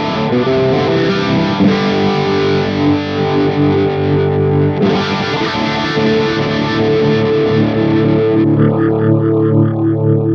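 Distorted electric guitar played through the NUX MG-300's rotary speaker modulation effect, over a backing jam track. Near the end the sound thins and takes on a quick, even pulsing wobble as the rotary speed is turned up.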